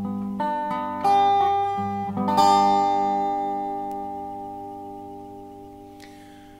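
Resonator guitar playing the song's ending: a few single picked notes, then a final strummed chord about two and a half seconds in that rings out and slowly fades away.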